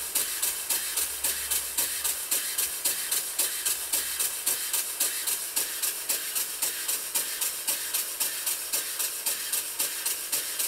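Cotswold Heritage Atlas model stationary steam engine running on compressed air. It gives a steady hiss with rapid, even exhaust puffs, about four to five a second.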